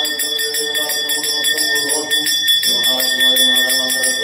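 A puja hand bell rung rapidly and without pause, its bright ringing steady throughout, over a chanting voice that settles into one long held note in the second half.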